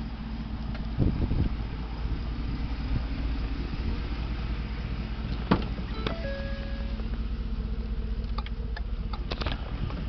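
Steady low rumble of a running vehicle, heard from inside the cab, with a faint steady hum. A few thumps come about a second in, sharp clicks follow later, and a short two-pitch beep sounds around the middle.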